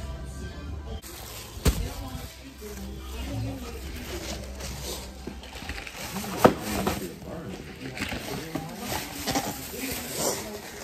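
Background music with faint voices, likely from a television playing in the room, with two sharp knocks, the louder about six and a half seconds in.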